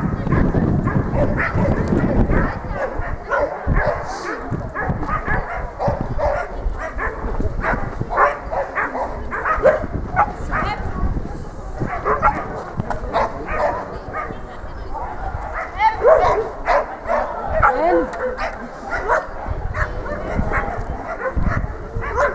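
A dog barking and yipping in repeated short bursts during an agility run, with voices in the background.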